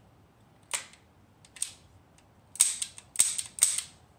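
The action of a Sulun Arms SR-410 revolving .410 shotgun being worked by hand in a function check: sharp metallic clicks, a single one about a second in and another shortly after, then a quick run of louder clicks near the end.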